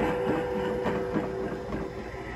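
Animatronic Fogging Reaper's electric motor and gearbox whirring with small rapid clicks as its head and body move, with a steady hum.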